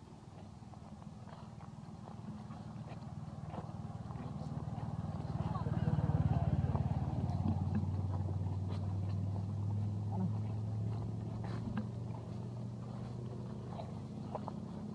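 A motor vehicle's engine grows steadily louder as it approaches, is loudest about six seconds in, then keeps running with a steady low hum.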